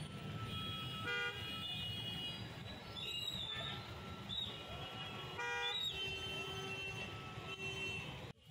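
Road traffic in a jam, with vehicle horns honking over a steady low engine rumble: a short horn blast about a second in and another a little past halfway, with fainter high horn tones in between.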